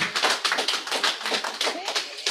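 Congregation applauding, a dense patter of hand claps with a few voices mixed in.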